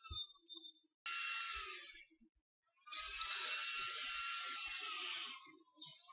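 A person breathing, heard as two soft hisses: a short one after about a second and a longer one of about two and a half seconds starting about halfway through.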